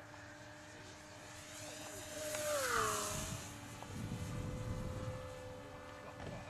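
Electric motor and propeller of a HobbyKing Moray mini pylon racer running on a 4-cell LiPo, making a high-speed fly-by. Its steady whine grows louder, then drops in pitch as it passes, about two and a half seconds in.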